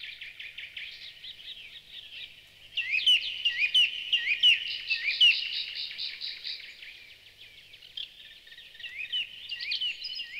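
Recorded birdsong: several birds chirping with short rising calls, growing louder and denser about three seconds in, with a run of quick repeated notes, then thinning out again.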